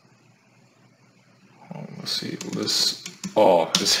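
Computer keyboard keystrokes as terminal commands are typed, under a man's voice talking quietly from about two seconds in; the first second or so is only faint hiss.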